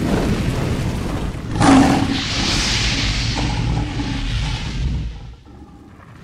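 Cinematic logo-intro sound effects: a low fiery rumble, a sudden boom about one and a half seconds in followed by a hissing swell, fading away near the end.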